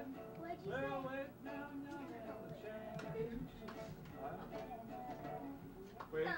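Acoustic guitar playing, with voices singing or talking over it.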